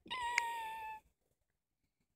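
A single high, meow-like call about a second long, holding its pitch and falling slightly at the end, with a sharp click partway through.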